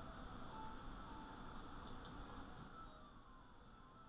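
Quiet room tone with two faint, sharp computer mouse clicks about two seconds in.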